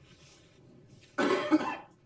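A person coughs once, loud and close to the microphone, a little over a second in, with a short burst lasting about half a second.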